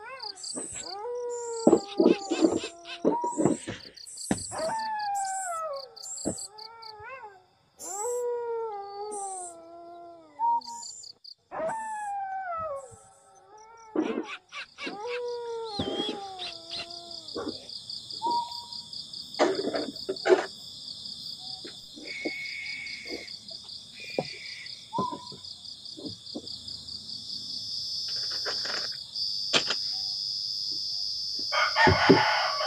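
An animal giving a series of drawn-out cries that each fall in pitch, repeated through the first half. After that a steady high insect chorus takes over. Scattered knocks and rustles of bedding being moved come throughout, loudest a little past the middle.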